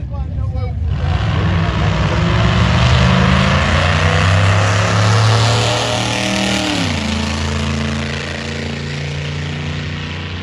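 Vintage gasser drag car engine at full throttle down the strip. Its note climbs as it accelerates, then drops sharply in pitch about two-thirds of the way through as the car passes close by, and carries on lower and quieter. Voices are heard briefly at the start.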